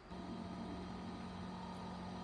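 Frezzer Pro 25L compressor cool box running: a steady low hum from its compressor over an even whir, a fairly moderate sound.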